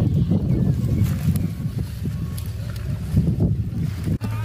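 Wind buffeting the microphone outdoors: a low, uneven rumble that rises and falls.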